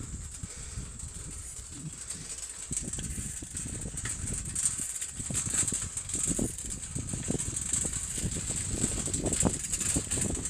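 Handling and movement noise on a handheld phone microphone outdoors: an irregular low rumble with scattered knocks, louder from about three seconds in, under a steady high-pitched hiss.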